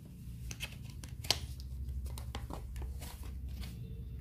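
Paperboard box of an eyeshadow palette being opened by hand: scraping and rustling of the packaging, with a sharp click about a second in.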